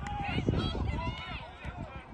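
Men's shouted calls from the pitch during a rugby league tackle, several short cries overlapping, with an uneven low rumble underneath.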